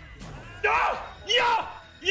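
A voice giving three short, loud shouts about two-thirds of a second apart, each rising then falling in pitch.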